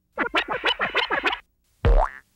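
Electronic cartoon sound effects for letters popping onto a title card: a quick run of about ten short tones sliding in pitch, then a loud low thump near the end.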